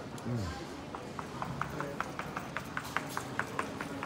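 Quick, regular clicking on a hard floor, about five clicks a second, starting about a second in, with voices in the background.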